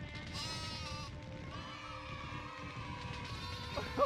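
A cartoon character's high voice crying in one long, wavering wail over background music.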